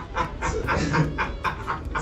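Two men laughing, a steady run of short ha-ha pulses at about five a second.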